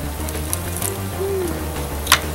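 Background music with a steady bass line, with faint pattering as fizzy liquid is poured out of a small plastic toy chest onto a plastic tray.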